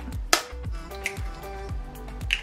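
Background music with steady tones, and one sharp crack about a third of a second in: an egg's shell broken for cracking it into a bowl of minced meat.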